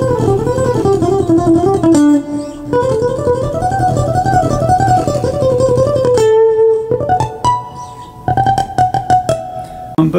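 Steel-string acoustic guitar played with a pick: fast alternate-picked single-note runs that wind up and down a scale pattern for about six seconds, then a held note and slower, separate picked notes near the end.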